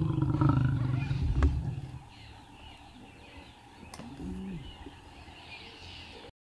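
Lions growling at a buffalo kill: a loud, deep growl for the first two seconds, then a shorter, quieter growl that rises and falls about four seconds in.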